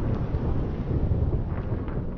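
Low rumbling sound effect of an animated logo intro, slowly getting quieter.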